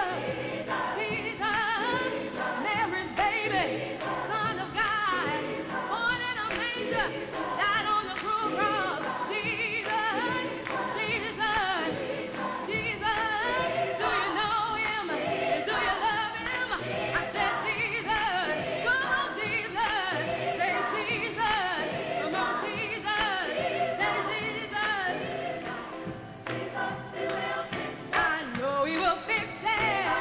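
A large choir singing a gospel song.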